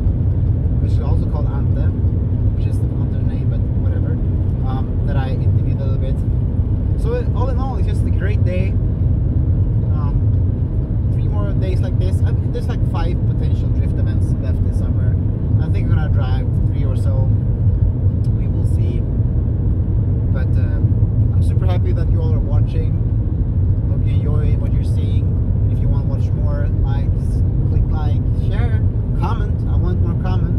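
Steady low drone of a Volkswagen car driving along the road, heard from inside the cabin: engine and tyre noise that holds even throughout.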